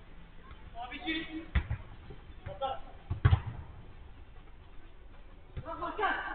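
A football struck twice during five-a-side play, two sharp thuds nearly two seconds apart, the second the louder, amid short shouts from players.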